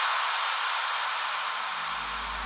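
A synthesized white-noise hiss that starts abruptly and holds steady, the opening of the outro music. A deep bass note comes in near the end.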